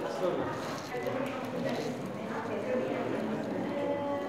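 Indistinct chatter of several people in a room, with hard shoes clacking on a stone floor.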